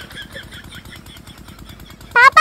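An irrigation water-pump engine running steadily, with a fast, even, low pulsing.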